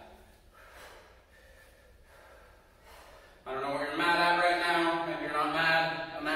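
Near silence for about three seconds. Then a person's voice comes in abruptly with a held, pitched vocal sound.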